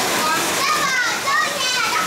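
Several voices talking over one another, some of them high-pitched children's voices, over a steady background hiss.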